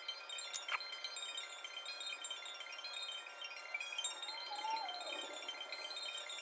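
Background music of soft, scattered chime-like ringing tones, with a wavering falling tone near the end.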